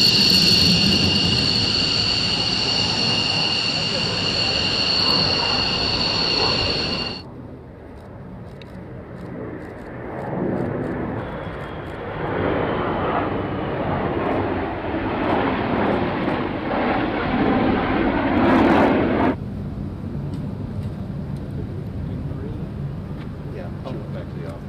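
Jet engine noise of F-22 Raptor fighters flying past. For about seven seconds it is loud, with a steady high-pitched whine, and then it cuts off abruptly. A second pass swells to a peak, cuts off suddenly a few seconds before the end, and leaves a quieter steady jet sound.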